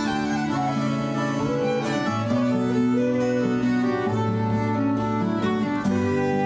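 Celtic folk band playing an instrumental passage, with fiddle melody over strummed acoustic guitar and accordion in sustained, slow-moving notes.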